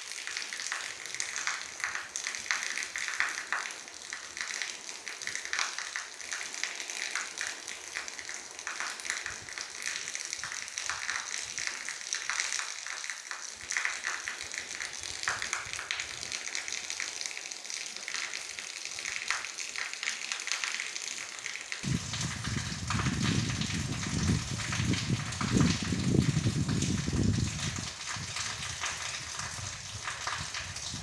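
Rain falling steadily: a hiss full of fine pattering drops. About two-thirds of the way through, a low rumble comes in and stays to the end.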